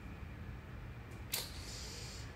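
Quiet room tone with a low steady hum, broken by one short click a little over a second in.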